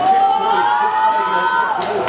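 A person's long, drawn-out shout, held and rising slowly in pitch for over a second and a half before dropping away. A few sharp knocks follow near the end.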